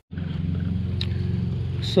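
Pickup truck engine idling, a steady low hum with a fine rapid pulse, with a short click about a second in.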